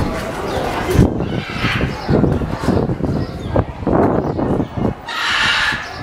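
Blue-and-yellow macaws squawking, with a harsh screech of about a second near the end, over the chatter of a crowd.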